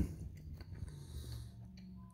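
Quiet closed-mouth chewing of a mouthful of cabbage soup: a few faint soft clicks and ticks from the mouth.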